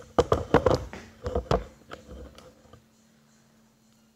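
Handling noise: a quick run of sharp knocks and taps over the first second and a half, a few softer ones around two seconds in, then quiet.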